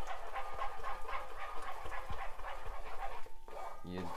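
Eggs sizzling and crackling as they fry in hot oil in a pan, stirred with a wooden spoon.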